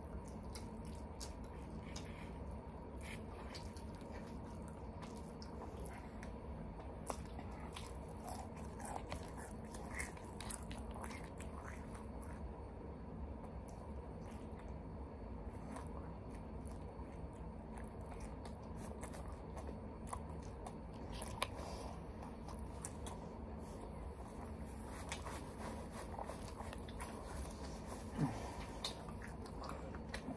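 A person eating chicken: faint chewing and small mouth and handling clicks, over a steady low hum.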